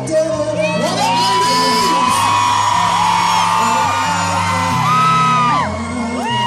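Live concert sound in a large hall: the band's backing music with steady, changing bass notes, under overlapping high, held screams and whoops from the crowd that rise, hold and fall away near the end.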